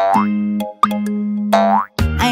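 Cartoon springy sound effects over children's background music: a rising sweep at the start, a short blip a little before the middle, and another rising sweep near the end, over held low notes that break off twice.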